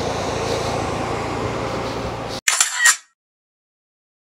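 Steady outdoor background noise that cuts off abruptly about two and a half seconds in, followed by a short camera-shutter click sound effect lasting about half a second.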